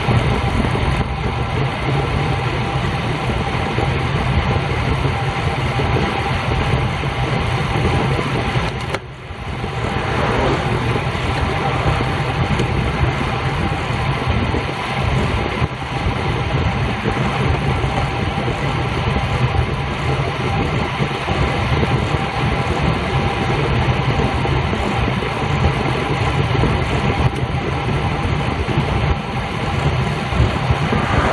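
Steady rush of wind over a bicycle-mounted camera's microphone and tyre noise on asphalt while riding at about 24 mph, with a brief drop in the noise about nine seconds in.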